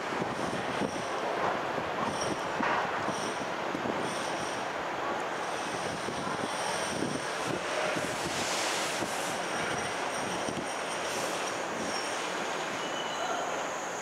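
London Underground 1960 Stock track recording train running slowly into the station over a steady rumble of wheels on rail. Its wheels give a high, thin squeal that keeps breaking off and starting again.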